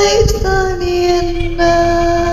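A singer's voice in a song: a short phrase, a brief break, then one long held note with vibrato.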